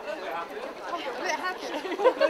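People chatting, their voices mixing in informal conversation.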